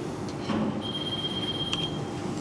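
Quiet room tone with soft handling noise at a podium microphone about half a second in, followed by a thin, steady high tone lasting about a second and a small click near its end.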